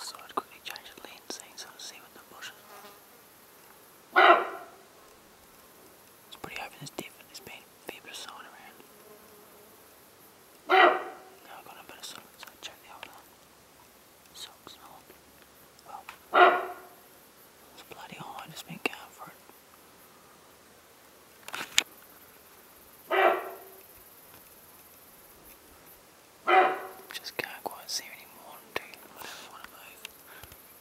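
A sika deer hind giving loud alarm barks, five short calls about six seconds apart, drawing attention to herself and away from her fawn. Faint crackling of movement through the bush between calls.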